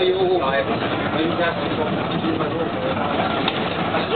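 Cabin noise of a Rheinbahn tram in motion: a steady running rumble, with people talking over it during the first half and a single sharp click about three and a half seconds in.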